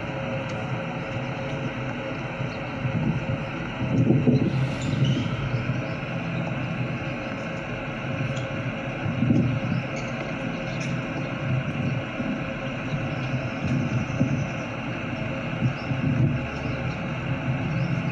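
Steady low outdoor rumble with a hiss above it, the rumble wavering in strength, and a brief louder rush of hiss about four seconds in.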